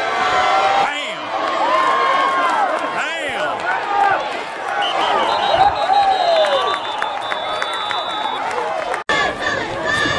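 Football spectators in the stands shouting, cheering and talking over one another as a play runs, with a thin steady high tone for about three seconds in the middle. The sound drops out for an instant about nine seconds in.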